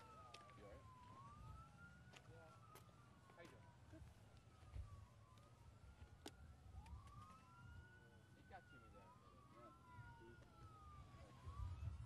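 Faint emergency-vehicle sirens wailing, two of them overlapping, each rising and falling in pitch about every two seconds. A few sharp clicks and a low rumble run beneath them.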